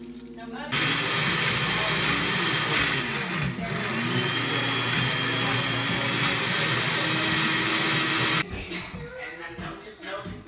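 Countertop blender running on strawberry daiquiri mix. It starts abruptly about a second in, runs loud and steady, and cuts off sharply near the end.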